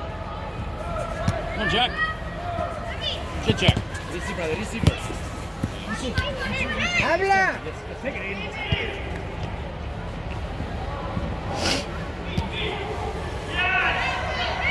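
Players and spectators shouting during an indoor youth soccer game in an air-supported dome, with short thuds of the ball being kicked a few times.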